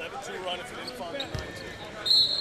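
Court sound from a basketball game: a basketball bouncing on the hardwood floor, with one low thud about a second and a half in, under faint voices in the arena.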